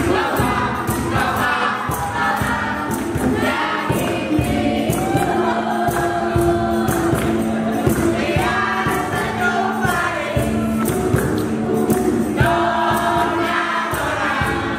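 A mixed group of voices singing a song together, with accompaniment that holds a steady low note and a regular percussive beat.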